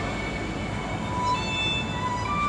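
Music with long held string notes over a steady background hiss, the notes changing about a second and a half in.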